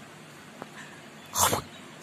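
A baby's single short, breathy vocal burst, like a laugh or squeal, about one and a half seconds in.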